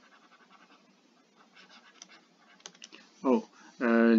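Faint, irregular scratching and tapping of a stylus writing on a tablet screen, followed about three seconds in by a person's voice as speech resumes.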